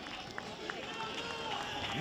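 Faint football-pitch ambience of distant voices and background noise, with a couple of short knocks about half a second in.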